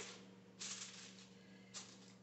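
Aluminium foil crinkling faintly as hands crimp it down around the edges of a baking dish: a short rustle about half a second in and a briefer one near the end, over a low steady hum.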